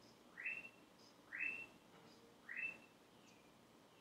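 A bird calling faintly: three rising whistled notes, each about a second apart.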